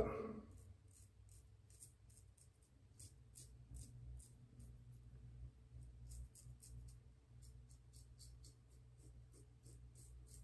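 Safety razor scraping through stubble in short, faint strokes, several a second, with the lather thinned to its residual slickness. A faint low hum runs underneath.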